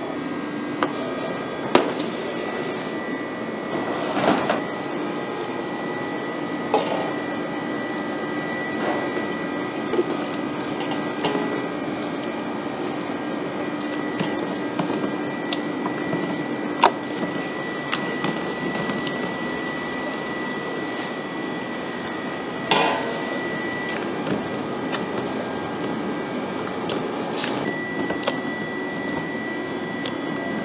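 Busy kitchen noise: a steady hum of running equipment with a high steady tone over it, and scattered clicks and knocks of utensils and cookware.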